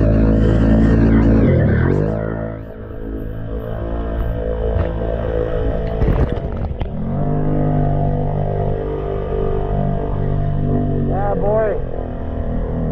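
Can-Am Renegade X mr 1000R ATV's V-twin engine running under load through deep water, with water and mud splashing against the machine. The engine note drops about two seconds in, then picks back up, and a burst of splashing comes about six seconds in.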